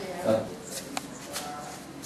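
Light handling noise: a few sharp clicks and a soft rustle, as of a fabric strap being worked by hand, with a brief voice sound just after the start.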